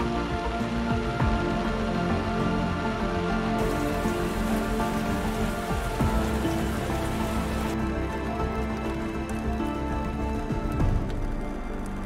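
Steady rain falling, an even hiss that brightens for a few seconds in the middle, with soft background music underneath.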